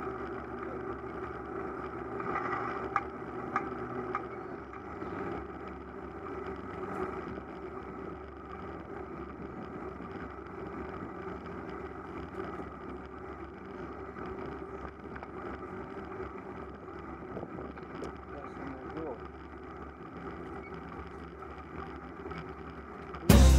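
A road bicycle rolling along a paved village street: steady, muffled tyre, road and wind noise picked up by a camera mounted on the bike.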